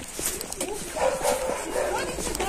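A dog barking in a few short, rough calls, most of them in the second half.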